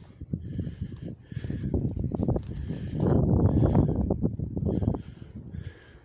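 Strong gusting wind buffeting the microphone, a low rumble that rises and falls and is heaviest a little past the middle.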